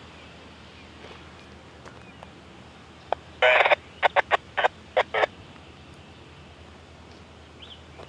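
Harsh bird calls about three and a half seconds in: one longer call followed by a quick run of six or so short ones, over a quiet outdoor background.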